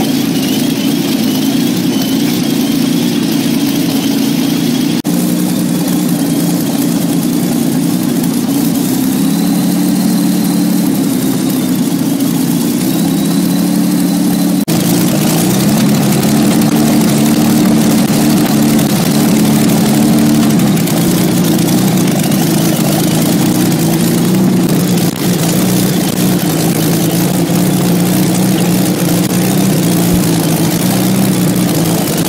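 Rolls-Royce Kestrel supercharged V-12 aero engine running steadily on a test stand through its short open exhaust stubs, loud, with small shifts in pitch.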